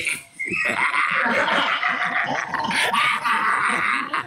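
High-pitched laughter, one long continuous outburst lasting about three seconds, starting about half a second in after a brief gap.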